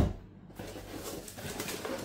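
A hard knock right at the start, then the rustling and scraping of a cardboard box and its folded card insert being handled.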